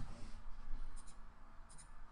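Light computer mouse clicks, a pair about a second in and another pair near the end, over a low steady hum of room noise.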